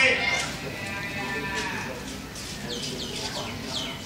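An animal's drawn-out, wavering cry trails off in the first moment. After it comes a run of short, high chirps, each falling in pitch, several a second.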